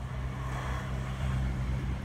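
Steady low engine hum, with a faint rushing noise that swells in the middle.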